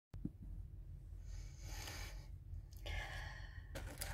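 A woman breathing heavily: two long sighing breaths about a second each, over a steady low hum.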